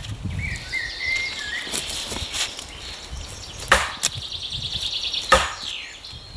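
Wooden club striking the top of a pointed wooden stake to drive it into a log round: a few sharp wood-on-wood knocks, the two loudest in the second half.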